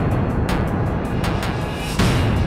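Industrial acid tekno track with a dense, heavy bass-driven beat and sharp percussion hits. A rising noise sweep builds in the highs near the end.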